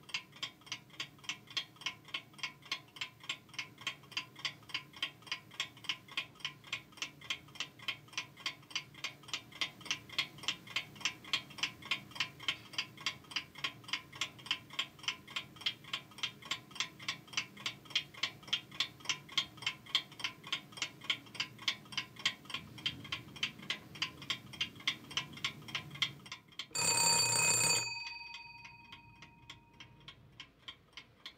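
A clock ticking quickly and evenly. Near the end a bell rings loudly for about a second, and its tone rings on and fades away.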